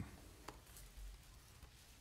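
Near silence: faint room tone, with one small click about half a second in and a soft low thump about a second in.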